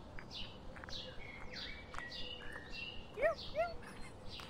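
Birds calling: a steady run of short, high, down-slurred chirps repeating about twice a second, with two short rising-and-falling calls near the end.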